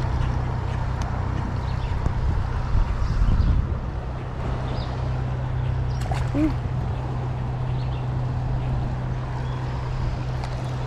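Steady rush of a creek's current running over a shallow, rocky riffle, with a low rumble of wind on the microphone that swells for about half a second about three seconds in.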